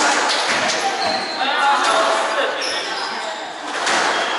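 Squash ball struck by rackets and smacking off the court walls, several sharp knocks in quick succession in the first second of a rally.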